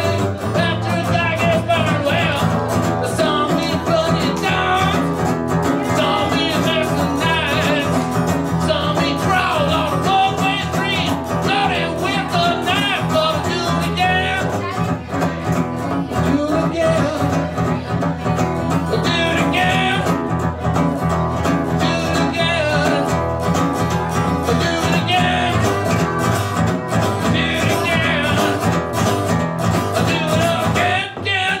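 A man singing live with a strummed steel-string acoustic guitar, a steady country-folk song.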